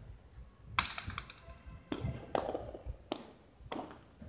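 Hard jai alai ball (pelota) cracking against the fronton wall and court during a rally: five sharp strikes about half a second to a second apart, the first and loudest leaving a short ringing echo.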